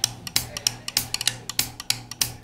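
A drum kit's hi-hat or cymbal ticking in a steady shuffle pattern, about three pairs of strokes a second, while the band holds a vamp, over a steady low hum.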